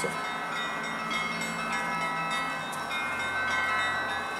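Church bells ringing: several bells sounding together, their tones overlapping and lingering, with fresh strokes coming in now and then.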